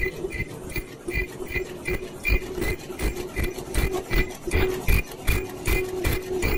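Fully automatic 3-ply face mask making machine running: a fast, even clicking cycle of about two and a half strokes a second over a steady hum, with irregular low thumps.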